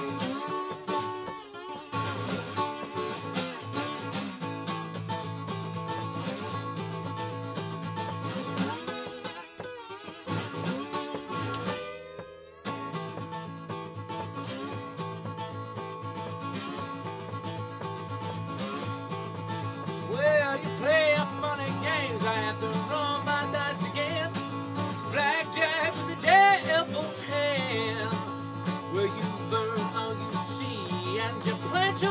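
Acoustic guitar played solo with a slide in a country-blues instrumental break, with no singing. The playing dips briefly about twelve seconds in, and gliding slide notes come in the second half.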